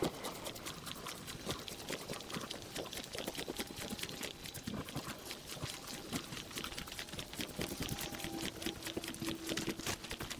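Footsteps and rustling of a person walking on a grassy track. About eight seconds in, a faint steady hum from a distant motor joins in, the sound of someone working in the woods.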